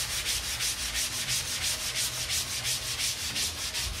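Damp kitchen dish sponge scrubbed back and forth in rapid, even strokes over the glue-coated wooden pallet of a screen-printing press, rubbing fabric lint off the tacky adhesive.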